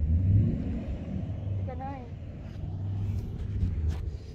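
Wind buffeting a phone's microphone: an uneven low rumble that surges and fades, loudest near the start.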